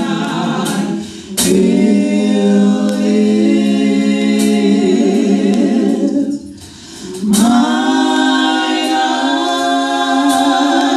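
Female vocal group singing gospel a cappella in close harmony, holding long sustained chords. The singing breaks off briefly twice, about a second in and again after about six seconds, before the next phrase swells in.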